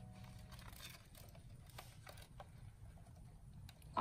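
Faint, scattered light clicks and rustles from a pink plastic hamster ball being handled and shifted on paper bedding, over a faint low hum.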